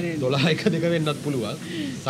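A man and a woman talking, with laughter.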